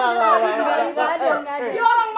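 A group of people talking and exclaiming excitedly over one another, several voices at once.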